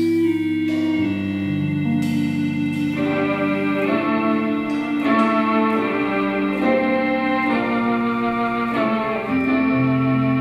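Live band playing a slow bossa nova: electric guitar and keyboard chords held and changing about once a second, with sparse light cymbal strokes from the drums.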